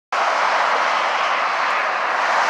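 Steady rushing noise of heavy freeway traffic: the tyres and engines of many vehicles passing on the interstate below.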